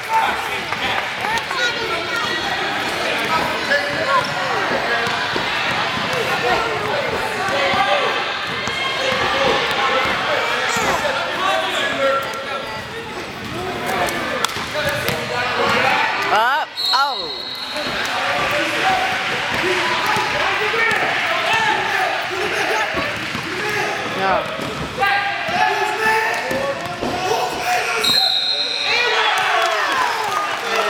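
Basketball dribbled on a hardwood gym floor under continuous spectator chatter and shouting, with two short high whistle blasts from the referee, about halfway and near the end.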